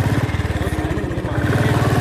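Motorcycle engine running steadily at low revs with a fast, even beat.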